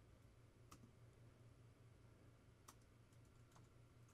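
Near silence: a faint low room hum with a few faint clicks, the clearest about a second in and near three seconds in.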